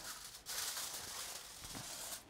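Aluminium foil crinkling and rustling as it is pulled back off a plate, a high, papery hiss starting about half a second in.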